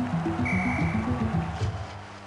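Sports news theme music: a fast bass line of short notes stepping up and down, with a held high tone briefly in the middle. The music eases off near the end.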